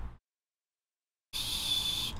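The audio drops out to dead digital silence for about a second, then a steady hiss with a thin high whine and a low hum comes back.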